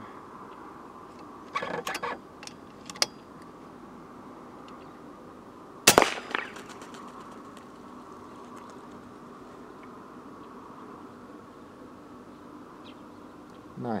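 A .22 FX Impact X PCP air rifle firing a single shot about six seconds in: one sharp, loud crack with a short ringing tail, fired from inside a car. A few lighter clicks come a couple of seconds before it.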